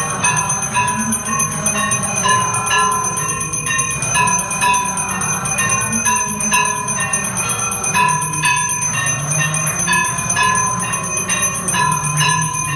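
Temple bells ringing for the aarti, struck over and over in a steady rhythm, with their metallic tones overlapping and ringing on.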